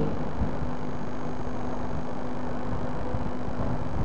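Steady background noise: a low rumble and hiss with a faint steady hum, unchanging, with no distinct events.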